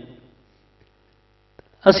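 A man's voice through a microphone and loudspeaker system dies away, leaving only a faint steady electrical hum from the sound system. Speech starts again just before the end.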